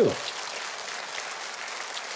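Studio audience applauding, an even, steady patter of clapping.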